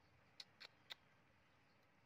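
Baby monkey suckling at a milk bottle's teat: three faint, short, high clicks about a quarter second apart, within the first second.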